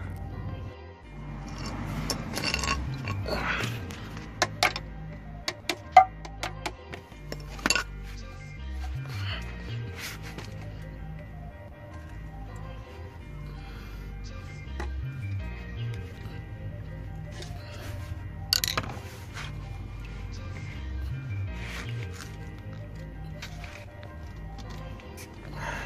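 Background music over a scatter of sharp metallic clinks and knocks, most of them in the first eight seconds and one more at about eighteen seconds. They come from a screwdriver being hammered into the side of a stuck oil filter and used as a lever to break it loose.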